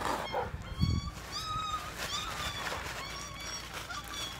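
Puppy giving a series of short, high-pitched yips and whines, with a dull thump about a second in.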